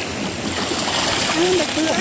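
Water splashing and churning as a large tilapia thrashes in shallow muddy pond water and is scooped up in a hand net.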